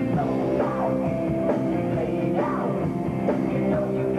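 Live rock band playing: guitar and drum kit under sung vocals, steady and loud.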